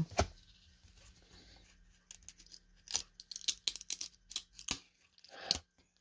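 1994 Topps baseball cards that are stuck together being peeled apart and flipped through by hand: an irregular string of sharp paper snaps and crackles starting about two seconds in. The cards tear paper off each other's surfaces as they come apart.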